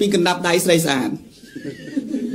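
A man's voice talking, holding a long drawn-out syllable at a steady pitch that breaks off about a second in, followed by quieter, broken vocal sounds.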